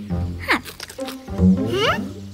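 Wordless cartoon character vocal sounds over children's background music: one sliding down in pitch about half a second in, and a louder one with rising tones near the end.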